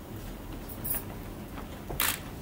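Low room noise in a hall, with a couple of faint, short ticks about a second in.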